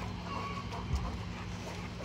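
Quiet outdoor background with a steady low hum and a few faint, brief animal sounds.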